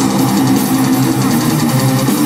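Live metal band playing loud, with distorted electric guitars and bass under a steady wash of crash cymbals, heard from the crowd.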